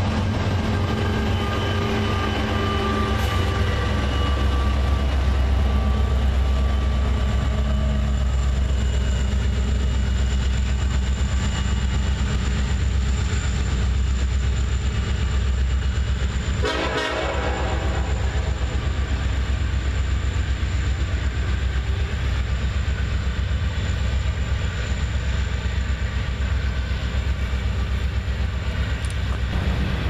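Loaded coal cars rolling past, with the deep, steady drone of Norfolk Southern diesel pusher locomotives working under load at the rear of the train. A short horn blast sounds a little past halfway.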